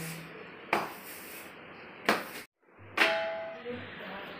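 Rubber floor wiper being pushed over wet floor tiles, with two sharp knocks. The sound then cuts out for a moment, and a further knock follows, ringing briefly.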